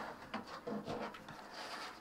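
Paper on a backing sheet being slid and turned on a tabletop: a faint rubbing scrape with a few small taps.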